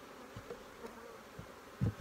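Honeybees buzzing steadily around an open hive, with a few short low knocks of hive equipment being handled, the loudest just before the end.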